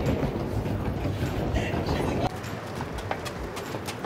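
Suitcase wheels rolling over a tiled terminal floor amid busy echoing background noise. About two seconds in, the sound drops abruptly to a quieter outdoor background with scattered light footsteps.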